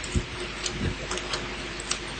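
Bible pages being turned: a few faint, irregular clicks and rustles over quiet room tone with a low steady hum.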